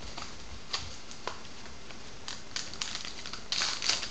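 Baseball trading cards and a card pack being handled on a table: scattered light clicks and flicks, then a louder crinkling rustle of the pack wrapper near the end.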